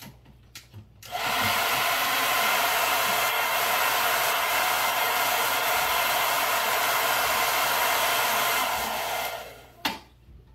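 Handheld hair dryer running, blowing over the open surface of an aquarium: a steady rush of air that starts suddenly about a second in and winds down shortly before the end.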